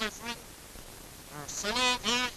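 A man's voice speaking in two short stretches, one right at the start and one in the last half second, on a thin, poor-quality 1950 recording.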